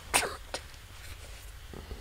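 A short, sharp burst of breath from a person, like a stifled cough, near the start, followed by a faint click.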